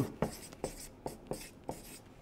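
A red felt-tip marker writing on a paper flip-chart pad: a quick string of short, separate strokes, about seven in two seconds.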